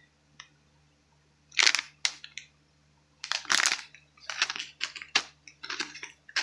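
Clear plastic packaging of a bag of disposable razors crinkling in short irregular bursts as it is handled.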